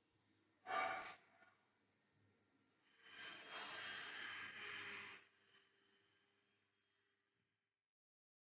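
Faint breathing close to the microphone: a short sniff about a second in, then a longer exhale lasting about two seconds, over a faint steady hum.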